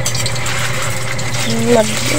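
Hot dogs frying in a little oil in a wok, a steady sizzle with a few light clicks of a metal spatula against the pan.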